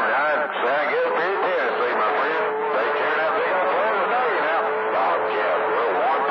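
Garbled, overlapping voices of distant stations heard through a CB radio receiver on channel 28 during skip reception, band-limited and hard to make out. A steady whistle tone sits under them from about half a second in.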